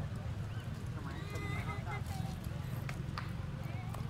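Outdoor background: a steady low rumble with faint distant voices, one brief pitched voice about a second in, and two sharp clicks a little after three seconds.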